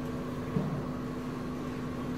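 Steady room tone: a hum and hiss with a low steady tone, and one brief soft sound about half a second in.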